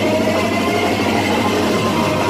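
Live garba band music through a loud PA, a dense held passage with no drum beats.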